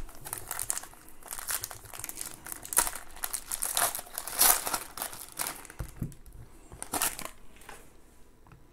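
Foil wrapper of a trading-card pack being torn open and crinkled by hand: irregular crackling, loudest about halfway through.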